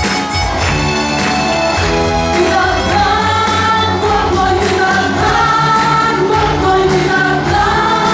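A live gospel worship band plays: a group of women sing the melody together into microphones, backed by electric guitar, bass guitar and keyboard keeping a steady beat.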